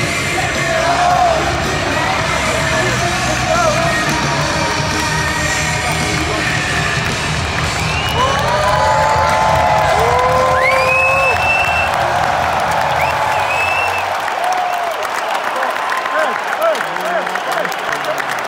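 Arena crowd cheering, whooping and yelling over a loud rock entrance theme played through the stadium PA. Close voices give whoops and calls in the middle, and the music's heavy bass drops away about three-quarters of the way through, leaving mostly the crowd.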